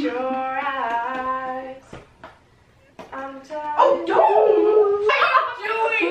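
Long drawn-out, pitched vocal notes, held and gliding, broken by a brief quiet gap in the middle, with laughter starting near the end.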